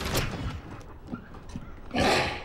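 A sharp thump, then a few soft knocks, and a pair of swinging lab doors pushed open near the end.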